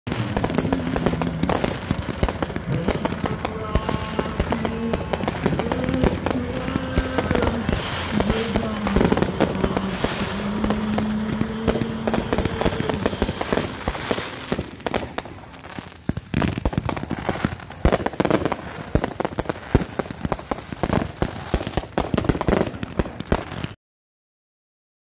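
Fireworks going off in a dense run of bangs and crackles. People's voices are heard over them through the first half. The sound cuts off just before the end.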